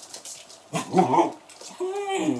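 A Shetland sheepdog vocalizing twice, about a second apart: a short loud call, then a second call that rises and falls in pitch.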